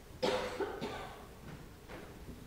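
A person coughing: one sudden cough about a quarter second in, trailing off within about half a second, with a softer short sound near the end.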